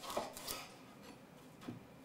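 Chef's knife cutting through broccoli stems onto a wooden cutting board: two faint, short cuts in the first half second and a softer one near the end.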